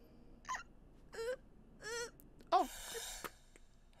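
A voice making four short, high, wavering whimpering sounds, about two-thirds of a second apart; the last one falls in pitch and runs into a breathy exhale.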